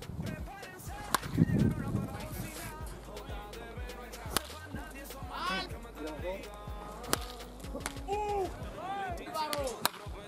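Sharp cracks of a baseball being hit or caught, four of them a few seconds apart, the last coming as the batter swings near the end.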